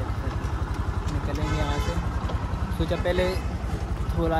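Motorcycle engine running steadily under way, a low pulsing rumble.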